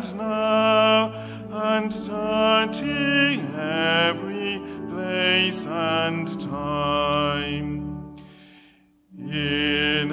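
A man singing a hymn solo in a slow, chant-like line over sustained organ chords. The sound fades to a brief pause about nine seconds in, and the next line begins right after.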